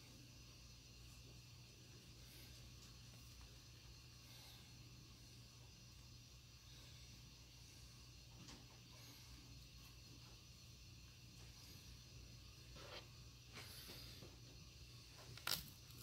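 Near silence: room tone with a steady low hum, and a few faint handling rustles in the last few seconds.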